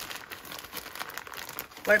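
Plastic courier mailer bag crinkling as it is handled, a steady run of small irregular crackles.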